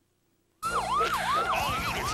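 A police siren in a fast yelping wail, each cycle sweeping down in pitch and snapping back up about two and a half times a second. It starts abruptly after a brief silence about half a second in.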